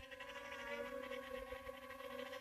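DJI Tello mini quadcopter hovering close by: a steady, even propeller hum made of several held pitched tones.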